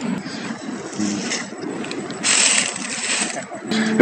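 Rustling and crackling of dry leaves and mulch underfoot and under a hand as a person walks up and rummages at ground level, with a louder rustle from about two seconds in.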